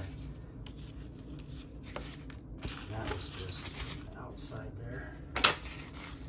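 Hands handling the two plastic parts of a waterproof phone case, light rubbing and rustling, with one sharp click near the end.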